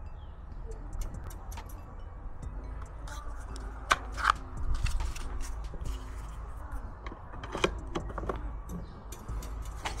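Scattered clicks and taps of a small plastic drone and its battery being handled, over a low steady background rumble. The loudest knocks come about four seconds in and again near eight seconds.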